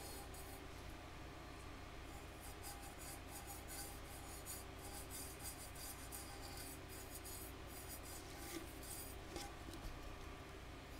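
Faint, scratchy strokes of a small paintbrush working blending solution over an alcohol-inked tumbler, over a steady low hum.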